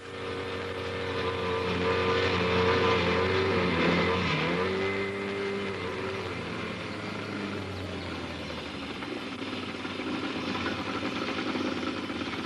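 Motorboat engine running at speed as the boat crosses open water. It starts suddenly and dips briefly in pitch about four seconds in, then runs on steadily.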